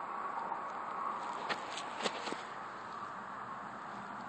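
Steady outdoor background hiss, with a quick run of four light clicks about halfway through.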